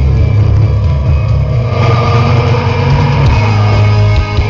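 Melodic death metal band playing live, with distorted guitars and bass that are loud and heavy in the low end. About two seconds in, a brighter crash of cymbals and guitar comes in above it.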